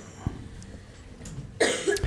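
A man coughs briefly into a handheld microphone near the end, clearing his throat; a soft thump comes about a quarter second in.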